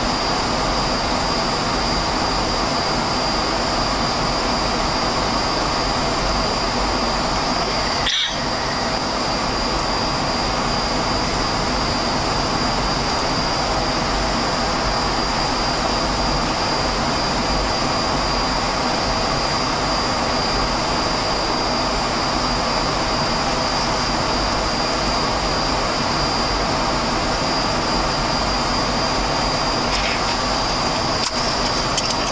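Steady in-flight noise on a Boeing 737-700 flight deck: a continuous rush of airflow and jet engine sound with a thin, steady high whine over it. There is a brief dip with a short chirp about eight seconds in.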